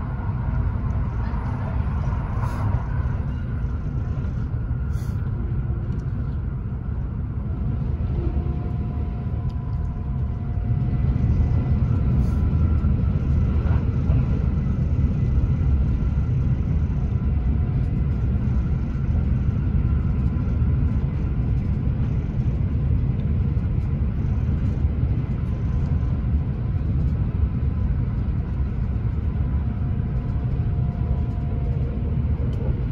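Cabin noise inside a Kintetsu 80000 series 'Hinotori' limited-express train running at speed: a steady low rumble of wheels on rail with faint steady tones above it. It grows louder about ten seconds in, as the train enters a tunnel.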